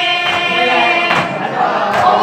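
A boy singing a noha, a Shia mourning lament, with other voices joining in chorus. Two sharp slaps cut in, about a third of a second and about a second in.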